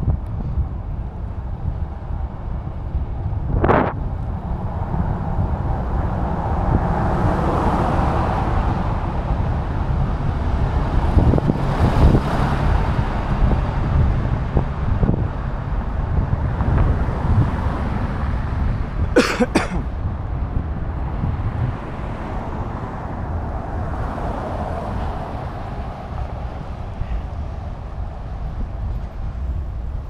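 Wind rumbling on the microphone of a rider moving along a city street, with road traffic passing; the traffic swells twice, long and gradual each time. A sharp click comes about four seconds in, and a quick double click a little before twenty seconds.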